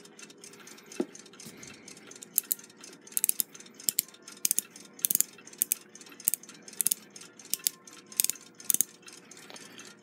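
Light, irregular metallic clicks and ticks from handling a Westclox Big Ben alarm clock's brass movement plate and freshly oiled time mainspring barrel, coming in small clusters, with one sharper knock about a second in.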